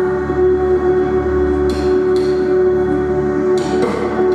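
Live worship band playing an instrumental passage between sung lines: sustained held chords over a steady low bass, with a few sharp struck or strummed accents about halfway through and near the end.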